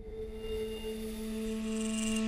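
A sustained musical drone of two steady held tones, a low one and one about an octave above, fading in from silence and swelling slowly.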